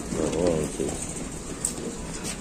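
A short, wavering voice-like call, under a second long near the start, over a steady background hiss.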